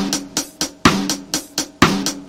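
Music: a recorded drum-kit beat from a song's intro, with sharp snare and rimshot hits about four times a second, over a few sustained low pitched notes.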